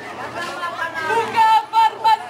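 Outdoor crowd chatter. From about a second in, a high-pitched voice shouts a run of short calls, rising to three loud shouts near the end.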